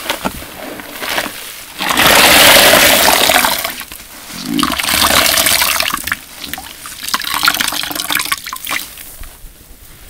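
Large yellow foam sponge squeezed by hand in a basin of sudsy detergent water: wet squelching and water gushing out in three long rushes, the first and loudest about two seconds in. The sound dies down near the end as the sponge is lifted out.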